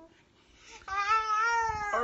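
A brief pause, then a single drawn-out high-pitched call lasting about a second, pitched well above the man's speaking voice, rising slightly and falling back.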